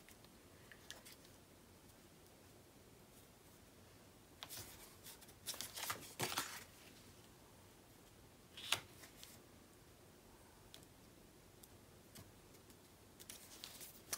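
Faint rustling and sliding of paper as a patterned paper liner is positioned and pressed down by hand onto a card, in a few short bursts from about four to seven seconds in and once again near nine seconds, with quiet room tone between.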